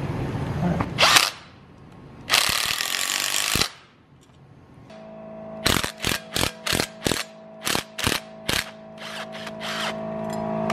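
Cordless impact gun hammering a rocker bolt, which levers a homemade plate down to compress an LS engine's valve springs. It gives a short burst about a second in and a longer run of about a second, then a string of about ten quick trigger taps.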